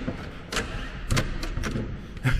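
A locked wooden double door knocking in its frame as it is tugged by the handle: a handful of sharp knocks, starting about half a second in. The door is locked and will not open.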